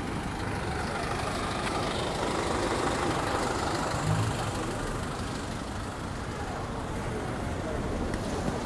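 City bus diesel engine running close by, a steady low rumble with general traffic noise around it.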